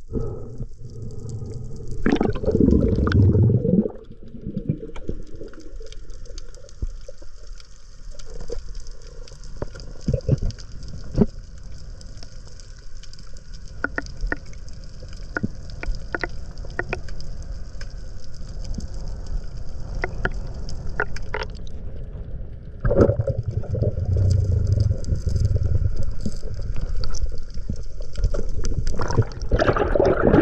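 Underwater sound of a diver swimming, recorded from the camera below the surface: a steady low water rumble with scattered sharp clicks. Water rushes loudly past the camera about two seconds in and again for most of the last seven seconds, as the diver moves up towards the surface.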